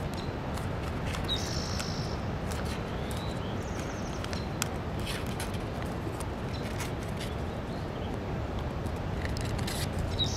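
Faint rustling and soft crackling clicks of a sheet of kami origami paper being creased and folded by hand, over a steady background hiss.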